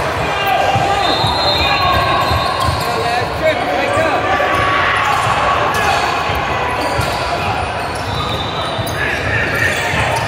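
Basketball game in a large gym: a ball bouncing on the hardwood court and short high sneaker squeaks, under indistinct voices from players and the benches, all echoing in the hall.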